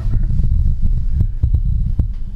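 Low rumble with irregular soft thumps: handling noise on the camera's microphone as the camera is panned.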